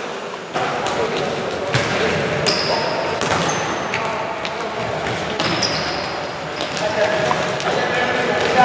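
Futsal game sounds in a sports hall: the ball being kicked and bouncing on the court floor in sharp thuds, players calling out, and a few short high squeaks, typical of shoes on the court.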